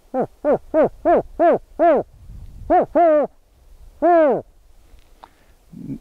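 A man imitating the agitated series call of the California spotted owl with his voice: a rapid run of about seven short barking hoots, a pause, two more, then one longer hoot about four seconds in.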